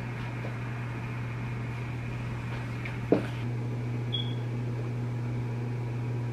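A steady low hum with room noise. It is broken by a single sharp thump about three seconds in and a brief high beep about a second later.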